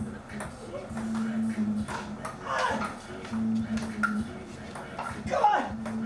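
Ping-pong ball clicking off paddles and the table in a rally, about two hits a second.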